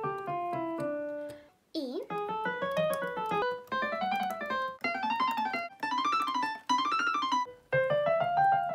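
Korg digital piano playing a five-finger white-key exercise: the right hand runs five notes up and back down, about one run a second, each run starting one note higher. There is a short break about a second and a half in.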